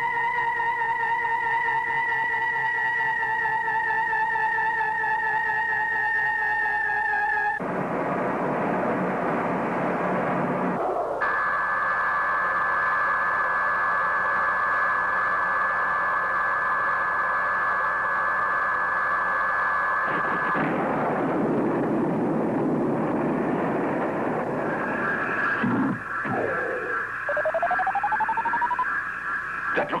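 Electronic science-fiction sound effects: a wavering, theremin-like tone of the hovering flying saucer falls slowly for about seven seconds, then gives way to a burst of noise. A steady electronic hum runs from about eleven to twenty seconds in, followed by more noise and a short rising glide near the end.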